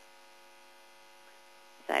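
Faint, steady electrical mains hum made of several fixed tones, with speech starting near the end.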